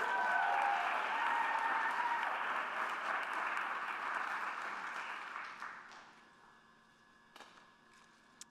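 Audience applauding, dying away about six seconds in, followed by a single light knock.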